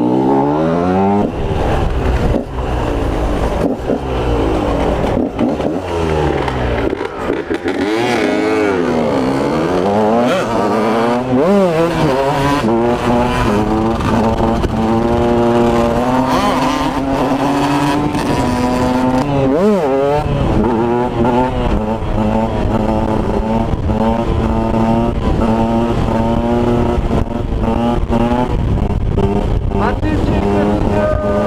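KTM 125 two-stroke motard engine ridden hard through the gears: the revs climb and drop back over and over in the first dozen seconds, hold high and fairly steady for a while, then fall sharply and climb again about two-thirds of the way in. Wind rumbles on the microphone underneath.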